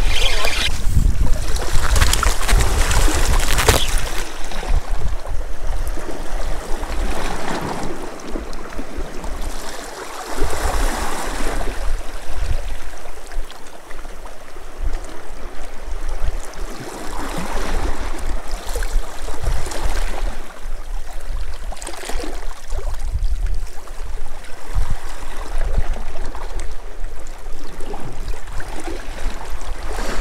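Sea water washing and lapping against rocks, swelling and easing in surges every few seconds over a steady low rumble.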